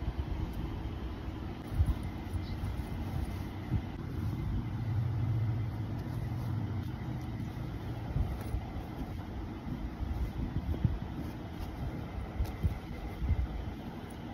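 Low rumbling handling noise from a handheld phone moved close over a cloth tote bag, with scattered bumps and a louder swell of rumble for a few seconds in the middle.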